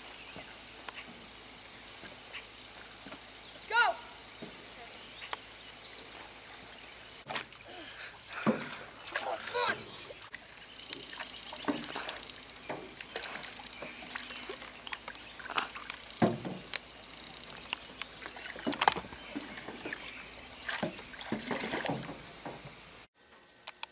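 A wooden paddle dipping and sloshing water beside a small boat, with a short rising-and-falling call about four seconds in. From about seven seconds on come brief voice sounds without clear words.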